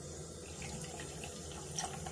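A bathroom basin tap running steadily, its stream of water splashing into the sink, with a toothbrush held under the flow near the end.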